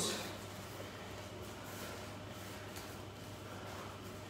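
Quiet room tone with a steady low hum; no distinct sound event.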